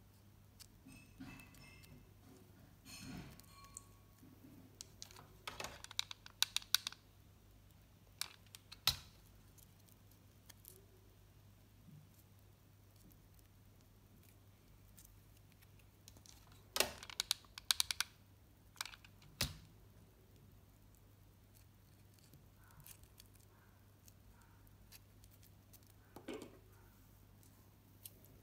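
Quiet handling of craft foam by hand: scattered small clicks and taps, bunched in two short clusters, over a faint steady low hum.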